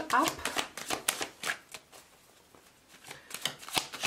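A deck of tarot cards being shuffled by hand: a run of quick, irregular card clicks and slaps, a lull of about a second, then more shuffling near the end.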